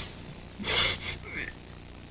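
A person's audible breath, once, about half a second in, over a faint low hum.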